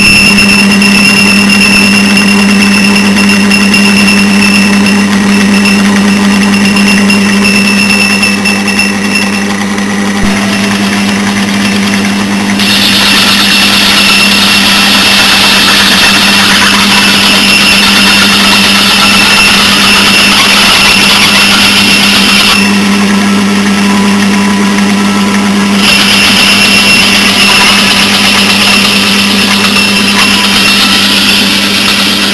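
Metal lathe running under power, turning a flange with the cutting tool throwing off long chips: a steady machine hum with a high whine through the first third, a louder cutting hiss through the middle, a short easing, and the hiss and whine back near the end.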